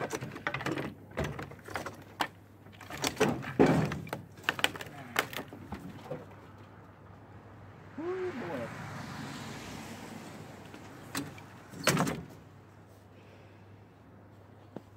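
Scattered knocks, clicks and clunks of hands and tools working on a fire-burnt V8 engine block. About eight seconds in there is a few seconds of hissing scrape with a faint squeal.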